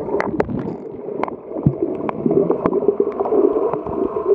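Underwater sound of waves surging in shallow water over a sandy bottom: a steady, muffled rushing with scattered sharp clicks.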